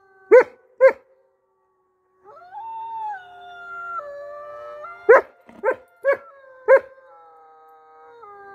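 A chorus of wolves howling, several long overlapping howls that step up and down in pitch, fading out after a second and swelling back in a little after two seconds. Short loud whooping calls cut in twice near the start and four times in the middle.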